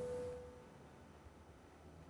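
A pause in speech: a faint steady tone fades out in the first half second, leaving near silence and quiet room tone.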